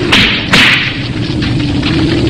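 Two sharp whip-like blow sound effects of a staged monster-suit fight, a little under half a second apart near the start, over a steady low rumble.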